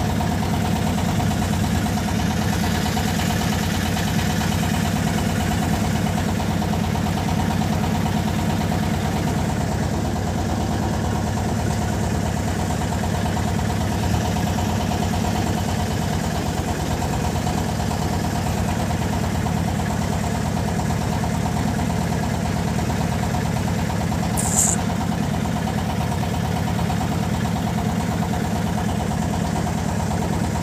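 A boat's engine running steadily at an even pace, with one brief high-pitched chirp about five seconds before the end.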